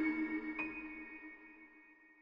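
Electronic audio logo sting: a chime-like chord rings out, a higher note is struck about half a second in, and both fade away.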